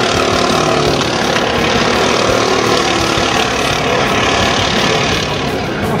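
Racing go-kart engines running at speed on the circuit: a loud, steady drone, with one engine's pitch sliding down right at the start.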